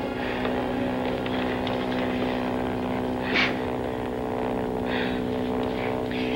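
Steady drone of a light propeller airplane's engine heard from inside the cockpit, an even, unchanging hum.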